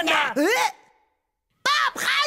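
A man's cartoon-style voice whose pitch slides down and up as it trails off, then about a second of silence; near the end a new vocal sound starts abruptly.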